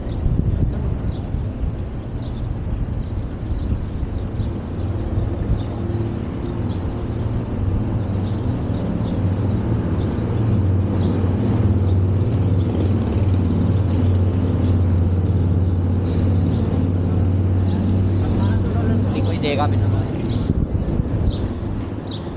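City street traffic with the steady low hum of a nearby vehicle's engine, strongest through the middle stretch and dropping away about two seconds before the end.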